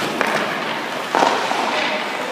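Ice hockey rink sounds: skate blades scraping on the ice, a sharp click just after the start and a louder knock about a second in, echoing in the rink.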